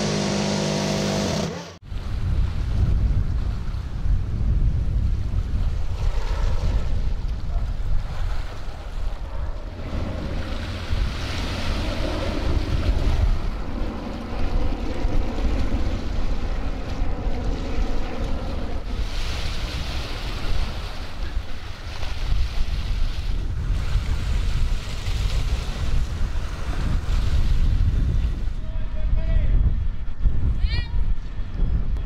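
A Phalanx CIWS Gatling gun firing one continuous burst of just under two seconds, a steady buzzing tone that cuts off suddenly. This is followed by a steady low rumble of wind and sea around a ship, with wind on the microphone.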